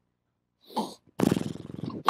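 A man's voice making a rough, rattling growl, with a short sound about half a second in and a longer buzzing growl over the last second: a mock drunken groan, acting out someone "drunk in the spirit".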